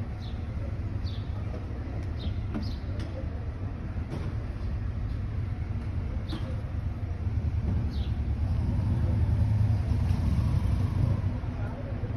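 Street ambience: a low rumble that grows louder for a few seconds past the middle, with a few short high chirps scattered through it.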